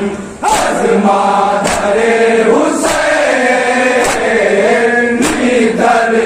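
A group of men chanting a noha in unison, with the dull slaps of hands striking chests in matam landing in time about five times, evenly spaced.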